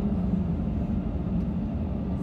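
Steady low rumble inside the cabin of an Airbus A320 while it taxis, from its engines at taxi power and the wheels rolling on the taxiway.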